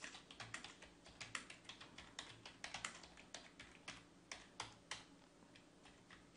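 Computer keyboard typing: a quick, irregular run of faint key clicks.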